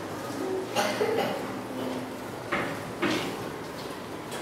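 A class of young children turning slowly on the spot: feet shuffling and scuffing on a tiled floor in a few short bursts, with scattered soft children's voices.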